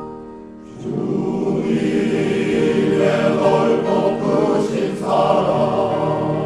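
A grand piano plays alone, then a men's choir enters about a second in and sings loudly over the piano accompaniment.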